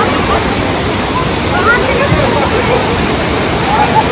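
Waterfall pouring down several rock tiers: a loud, steady rush of falling water, with people's voices faintly mixed in.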